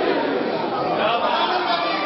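Several men's voices overlapping at once, a dense run of speech-like voicing with no pauses.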